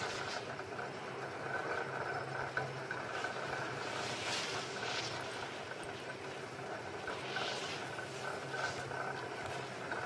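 Skis scraping and swishing on packed mogul snow through short turns, a brief swish every second or so, over a steady background hiss.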